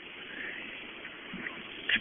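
Faint, steady cabin noise of a running car, heard through a phone's microphone.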